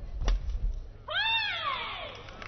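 A shuttlecock struck by a racket, then about a second in a badminton player's high-pitched shout that rises and falls over about a second.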